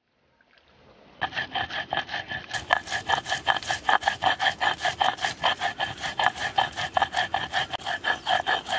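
A cylindrical stone roller grinding chillies and spices into a wet paste on a flat stone slab (sil-batta), scraping in fast, even back-and-forth strokes. The grinding starts about a second in.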